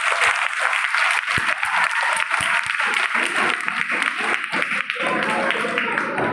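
Audience applauding a finished dance performance: dense, steady clapping that thins out after about five seconds.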